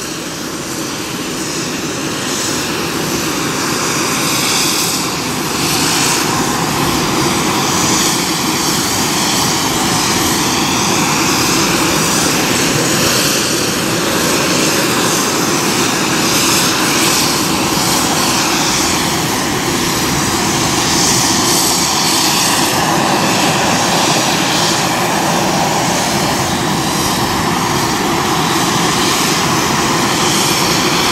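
JMSDF MCH-101 (AW101 Merlin) helicopter's three turbine engines running on the ground as its rotors turn up during start-up: a steady turbine whine and rush that builds over the first several seconds, then holds level.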